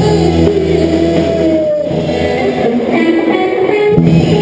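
Live rock band playing through amplifiers, led by electric guitars, with a long held note rising slightly in pitch during the first two seconds.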